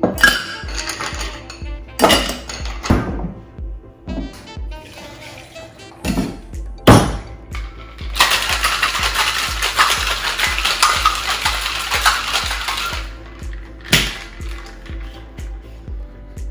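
Ice being dropped into a stainless-steel Boston shaker tin with a few clinks, then the tins knocked together and the cocktail shaken hard, ice rattling inside the metal tins for about five seconds. A sharp knock comes near the end. Background music plays throughout.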